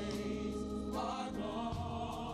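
A small gospel vocal ensemble singing in harmony over held accompaniment chords, with a new sung phrase coming in about a second in.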